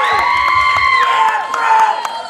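Audience cheering with high-pitched screams and whoops, one held for about the first second, over scattered clapping.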